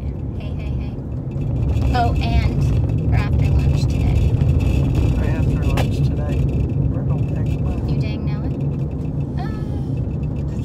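Steady low road and engine rumble inside a moving car's cabin, growing louder about one and a half seconds in. A few brief voice sounds come through over it.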